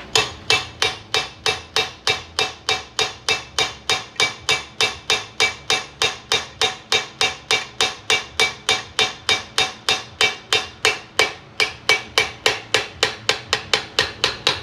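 Hammer driving a steel punch in a steady run of about three blows a second, each with a short metallic ring, knocking the pinion plate out of a GMC motorhome's final drive housing.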